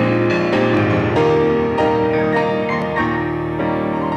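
Solo grand piano playing a praise medley, with full sustained chords and a new chord struck about every half second.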